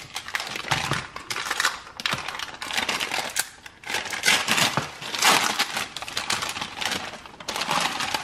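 Plastic food packaging crinkling and rustling as a pouch and its clear plastic inner wrapper are pulled open by hand: a continuous run of irregular crackles, with louder bursts about four and five seconds in and again near the end.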